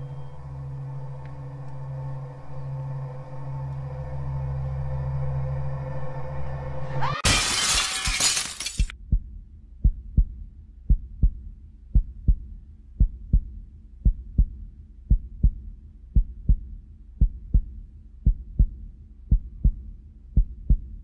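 Trailer soundtrack: a low, steady music drone swells, is cut off about seven seconds in by a loud shattering crash, and gives way to a heartbeat sound effect, double thumps about once a second.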